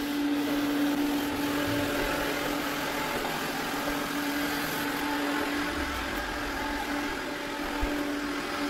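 Eureka J12 Ultra robot vacuum-mop running as it cleans a tiled floor: a steady motor hum with one held tone over an even fan hiss.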